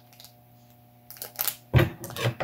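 A plastic toy packet being handled and pulled at to tear it open. It gives a few sharp crinkles from about a second in and one louder thump near the end.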